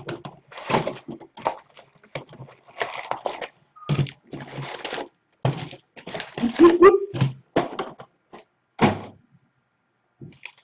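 Trading cards and card packs being handled and set down on a tabletop: a run of short knocks and thunks with rustling between them. A brief pitched sound about seven seconds in is the loudest moment.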